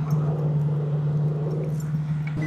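Steady low engine hum, like a car idling, holding one pitch throughout.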